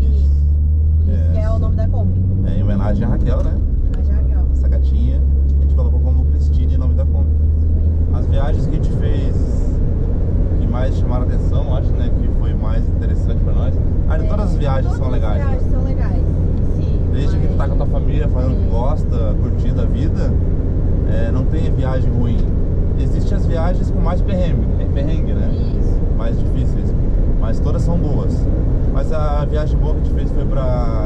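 Steady road and engine rumble inside a moving VW Kombi's cabin. About eight seconds in it gives way to a different steady low rumble with indistinct voices of adults and children.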